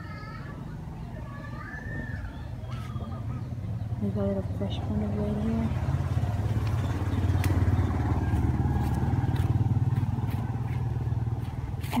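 A passing motor vehicle's engine: a low drone that grows louder over several seconds, peaks past the middle and eases off near the end.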